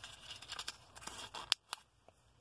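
Small slips of paper rustling and crinkling as they are pulled from a stack by hand, with faint scattered crackles and two sharp clicks about a second and a half in.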